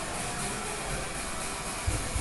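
Electric hair clippers running steadily while trimming short hair around a child's ear, with a brief low bump near the end.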